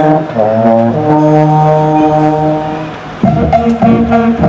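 Wind band of brass and saxophones playing: sustained held chords that soften just before three seconds in, then a louder passage of short, accented repeated notes begins.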